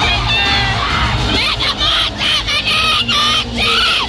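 Arena concert crowd shouting and cheering over loud amplified music, with high voices close to the microphone. In the second half the shouting breaks into a run of short yells.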